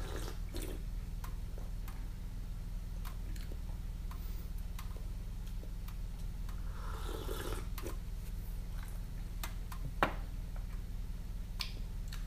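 Small teacup being sipped from and handled: a soft breathy sip sound about seven seconds in and a sharp light click of the cup about ten seconds in, with faint scattered clicks over a steady low hum.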